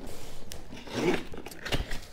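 Scissor blade drawn along packing tape to slit open a cardboard box: a rasping scrape of blade on tape and cardboard, with a sharp click about half a second in and a knock near the end.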